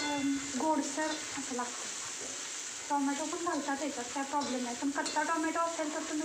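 Chopped green chillies and greens frying in a steel kadhai on a gas flame, sizzling steadily, while a perforated steel ladle stirs and scrapes through them against the pan.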